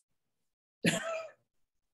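A single short, non-word burst of a woman's voice about a second in, lasting about half a second, with silence around it.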